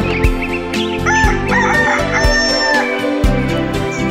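A rooster crowing once, a cock-a-doodle-doo ending in a long held note, over light background music with a steady beat.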